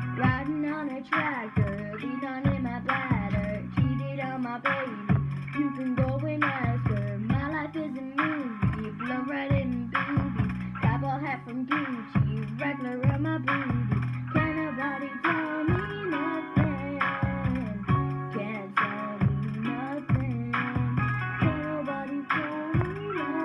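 A song playing, with singing over plucked guitar and a steady beat.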